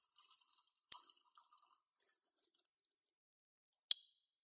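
Faint wet mouth sounds of sipping and swallowing a drink from a glass: scattered small clicks, with a sharper click about a second in and another near the end.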